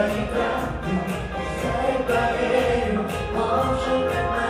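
Live pop song: a woman singing into a handheld microphone over a band with a steady beat, backed by layered voices.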